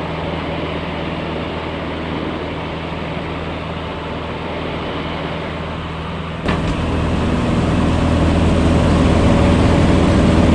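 Light aircraft's piston engine and propeller droning steadily, heard in the cabin with the door ajar in flight. About six and a half seconds in there is a sharp click, and the cabin noise jumps louder and keeps growing.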